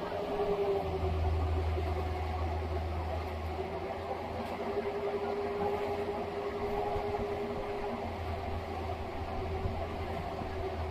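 Compact excavator's diesel engine running under load, with a steady whine over it. A low rumble swells from about a second in, eases off near four seconds, and comes back near the end.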